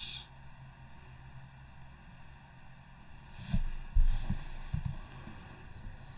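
Faint steady hum and hiss of room tone. A few soft low thumps come between about three and a half and five seconds in, the loudest about four seconds in.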